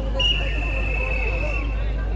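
A high, thin whistling tone held for about a second and a half, dipping slightly in pitch toward the end, over the murmur of a street audience.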